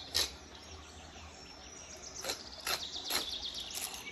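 Faint chirping of small birds with a few short, soft clicks.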